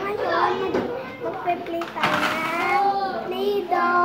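A young boy talking, his words unclear.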